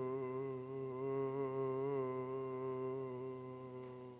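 A man's voice holding one long sung 'oh' on a low note, wavering slightly in pitch and fading away near the end.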